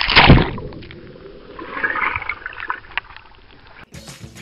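A loud splash as a swimmer and camera go into a swimming pool, then muffled churning and gurgling water around the camera, swelling briefly about halfway through and cutting off suddenly near the end.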